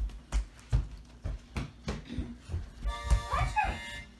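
A run of soft low thumps, about three a second, then near the end a harmonica starts playing a held chord.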